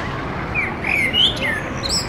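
Small birds chirping: a run of short, sliding chirps in the first second and a half, over steady outdoor background noise.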